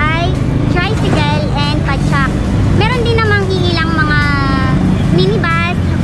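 A woman talking in a high, lively voice, with long drawn-out gliding tones in the middle, over the steady low hum of a motorcycle tricycle's engine.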